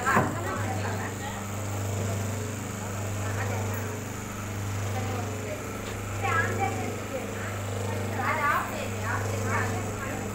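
Semi-automatic hydraulic paper plate making machine running: a steady low hum from its motor and pump that swells and eases slowly. Brief women's voices come in during the second half.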